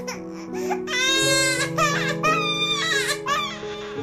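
Gentle keyboard background music, with a baby crying over it in several wavering cries beginning about a second in.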